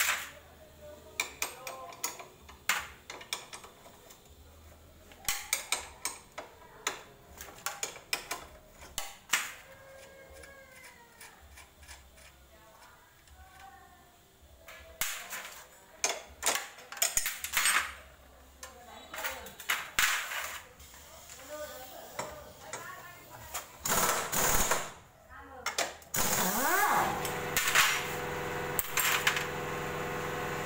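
Metal tools and parts clinking and knocking in irregular bursts as the rear wheel of a motorbike is taken off. Near the end a motor starts up with a rising pitch and settles into a steady hum.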